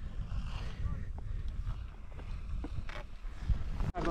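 Wind buffeting the camera's microphone: a steady low rumble, with a few faint clicks.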